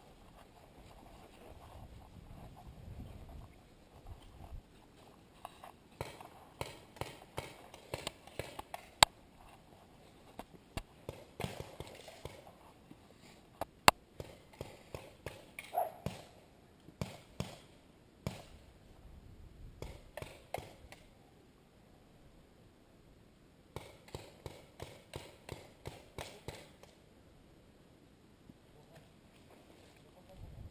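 Paintball markers firing in strings of rapid pops, several shots a second, in repeated bursts, with two single louder sharp cracks.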